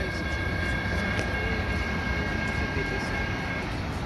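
Steady low rumble of an approaching Caltrain commuter train, with two faint steady high tones that cut off shortly before the end.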